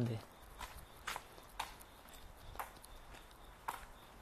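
Footsteps on a paved street, a few sharp steps about half a second apart, then two more spaced further apart.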